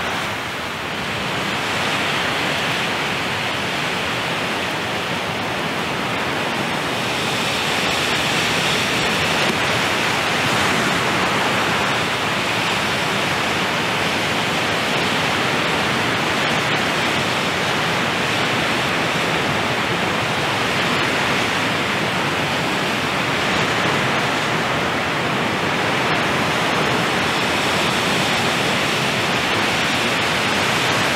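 A loud, steady rushing noise, even and unbroken, with no tones, rhythm or separate events.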